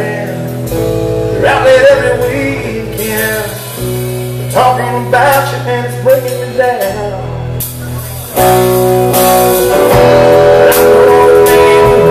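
Live band music: a man singing into a microphone over his electric guitar, with a bass line underneath. The band gets louder about two-thirds of the way through.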